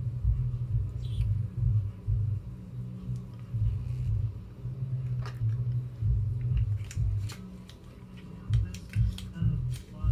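Cosmetic packaging being pulled and torn open by hand, with scattered crackles and clicks that come thickest in the last few seconds: a package so hard to open that it gets ripped. Low background music runs underneath.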